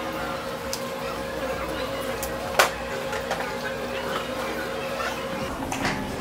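Steady hum of a pedicure spa chair's foot tub, with water sloshing in the basin. A single sharp click about two and a half seconds in.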